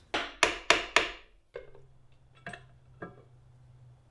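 Steel hammer tapping four times in quick succession on the side case cover of a 1985 Honda ATC 125M engine to break it loose from its gasket, used in place of a rubber mallet. Three lighter knocks follow as the cover comes free.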